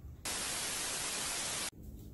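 A burst of static-like white noise, about a second and a half long, starting and stopping abruptly; it sounds like an added static sound effect marking a video edit.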